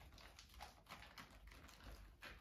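Faint, irregular crinkling and light tapping of empty plastic milk bags as pet rats scurry across them.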